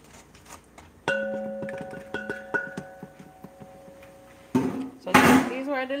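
A stainless steel mixing bowl rings after a knock about a second in, a clear metallic tone fading slowly over about three seconds, with a couple more light knocks on it. Near the end comes a short, loud clattering rush in the bowl.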